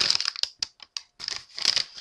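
A quick, irregular string of sharp clicks and crackles, about a dozen, with short near-quiet gaps between them.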